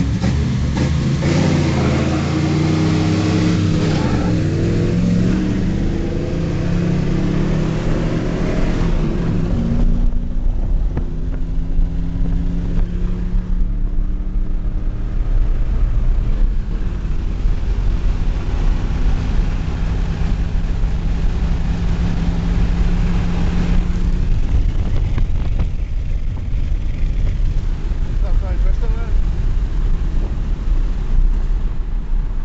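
V8 engine accelerating hard under full throttle, heard from inside the cabin, its pitch climbing for about the first ten seconds. It then lets off suddenly and settles into a steadier, quieter cruise.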